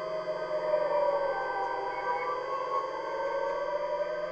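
Electroacoustic music for bass clarinet and live electronics: a dense layer of sustained tones whose pitches bend slowly, over a low pulsing drone.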